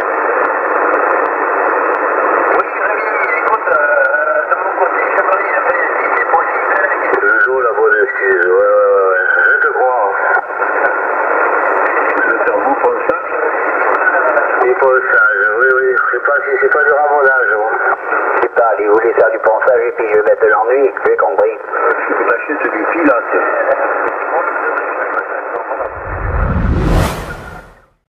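A distant station's voice received in single sideband on a Yaesu FT-450 transceiver on CB channel 27 (27.275 MHz): thin, narrow and hard to make out under steady hiss. Near the end, a rising whoosh with a low rumble, then the sound fades out.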